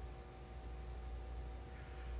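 Quiet room tone with a steady low electrical hum and faint steady tones; no distinct events.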